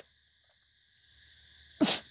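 A pause in a man's spoken devotional discourse, with only a faint steady background hum. Near the end comes a short, sharp breath-like burst as the speech starts again.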